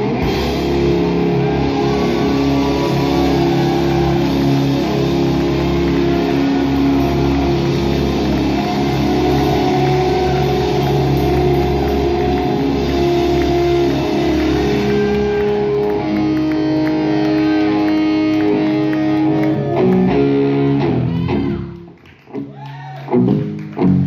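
Live rock band playing loudly: distorted electric guitars, bass guitar and a drum kit. Near the end the music suddenly drops away, then a few short loud guitar hits ring out.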